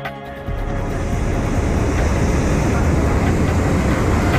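Hot air balloon propane burner firing, a dense rushing noise, heaviest in the bass, that starts about half a second in and grows steadily louder.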